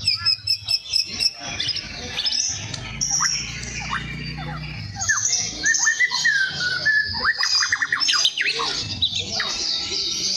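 White-rumped shama singing in full display at a rival: a varied run of quick whistled notes and fast up-and-down chirps, with a dense rapid series of notes about seven to eight seconds in.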